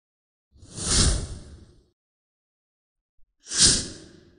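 Two whoosh sound effects about two and a half seconds apart, each swelling quickly and fading out over about a second, with silence between.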